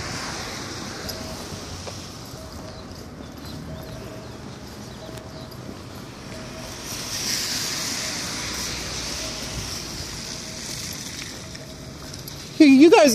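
Steady outdoor street background with distant traffic, growing louder for a few seconds past the middle before settling again.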